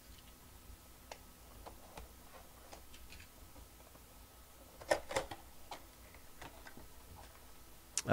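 Faint, irregular clicks and rubs of fingers handling and opening a cardboard box, with a couple of louder scrapes about five seconds in.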